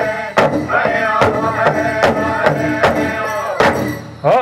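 Pow wow drum group singing over a steady, even drumbeat, about two and a half strokes a second. The drum and singing stop just before the end.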